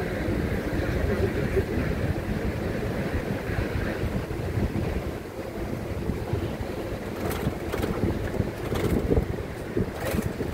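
Wind buffeting the microphone on the open top deck of a moving double-decker tour bus, over the bus's steady low rumble, with a few short crackles about three-quarters of the way through.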